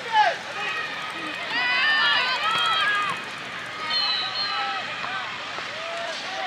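Several high voices shouting and calling out at once over an outdoor football match, loudest about two seconds in, with lone calls after.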